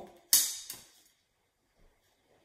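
A long metal ruler laid down and slid onto a sheet of squared paper: a brief scraping rustle about a third of a second in that fades within about half a second.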